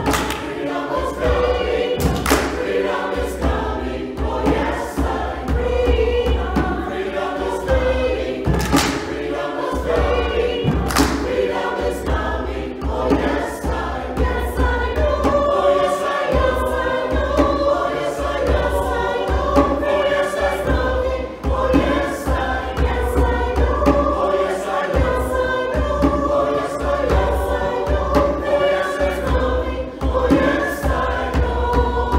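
Mixed church choir singing in harmony, holding long notes, with occasional low thuds and a few sharp knocks underneath.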